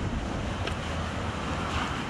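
Steady rush of flowing shallow creek water, with wind noise on the microphone.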